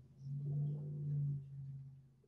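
A person's voice holding a long, steady hesitation hum, an 'mmm' on one low pitch, fading out near the end.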